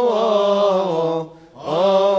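Coptic Orthodox liturgical chant, sung as the response before the Gospel reading: one voice holds a long, slowly wavering melismatic line. It breaks off briefly about one and a half seconds in, then carries on.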